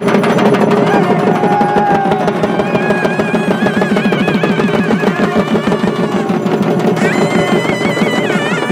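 Live festival music: drums beaten in a fast, dense roll under a held drone, joined from about two and a half seconds in by a reed wind instrument playing a wavering melody.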